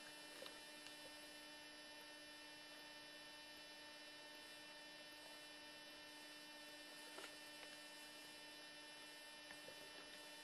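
Near silence: a faint steady electrical hum made of a few fixed tones, with light hiss and a couple of faint ticks.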